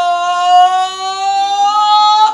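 A woman's long, high wail of grief: one held cry that rises slightly in pitch.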